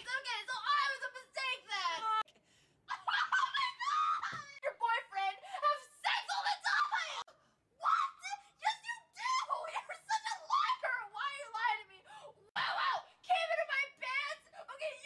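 A young woman's voice in high-pitched, wavering emotional outbursts, somewhere between sobbing and laughing, broken by two short pauses.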